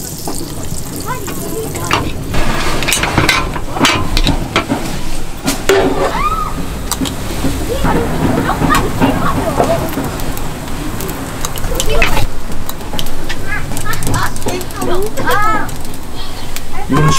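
Cast-iron bungeoppang (fish-shaped bread) molds and metal utensils clanking and tapping, with batter sizzling as it is poured into the hot molds and spread with filling. Voices chatter throughout.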